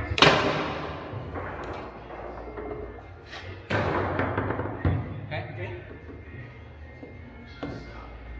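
Foosball play: a loud sharp crack of the ball struck hard just after the start, then further sharp knocks of the ball and rods about three and a half and five seconds in, with a smaller one near the end.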